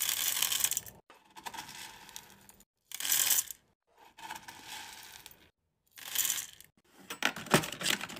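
Hard wax beads rattling: a stream of small beads poured into a metal wax warmer pot, then a metal scoop digging and scraping through beads in a drawer, in several short bursts with brief silent breaks. Near the end comes a quicker run of sharp clicks and rattles of beads.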